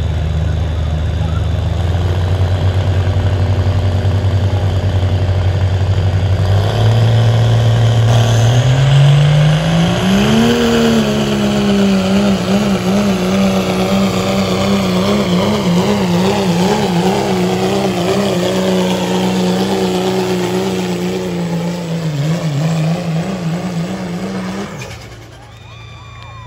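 Dodge Cummins turbo-diesel straight-six in a pulling pickup. It is held low while building boost, then revs up steeply about seven to ten seconds in. It stays at high revs under full load, with the pitch wavering quickly, while it drags the sled, and drops off near the end as the pull finishes.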